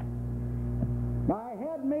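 Steady electrical mains hum in the recording, a low buzz with its overtones. It cuts out a little past halfway, when a man starts speaking into the lectern microphone.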